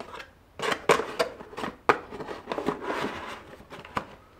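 Cardboard packaging being handled, as the insert is pulled out of a cardboard box. There are a few sharp knocks and taps in the first two seconds, then a scraping rustle of card against card.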